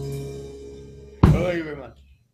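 The last chord of an acoustic rock band, acoustic guitar and keyboard, ringing out and fading. About a second in comes a sudden sharp hit together with a short shout from a voice.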